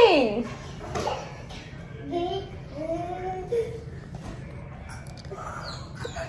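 A toddler's voice: a high squeal falls away at the very start, then a few short, quieter babbling calls come about two to three and a half seconds in.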